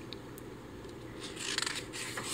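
A paper page of a picture book being turned by hand: a brief crackly rustle near the end, over a faint steady hum.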